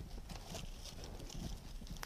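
Faint rustling of foliage and a few soft taps as a cut flower stem is worked down into a vase arrangement.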